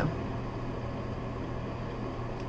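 Steady low hum over a soft, even hiss, with no change through the pause: a constant background drone such as a fan or ventilation running.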